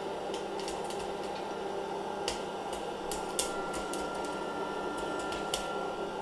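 Hot-air electric popcorn popper's fan blowing steadily, with a handful of sharp pops scattered through it as the kernels start to pop.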